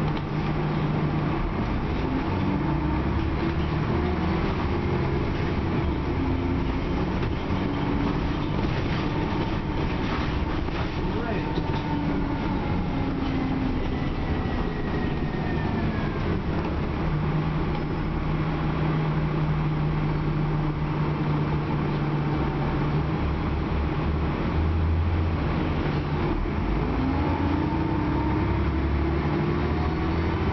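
Interior sound of a 2001 Dennis Trident double-decker bus under way: its diesel engine and transmission running, the engine note rising and falling several times as the bus pulls away and slows. Road noise and rattles from the body and fittings run underneath.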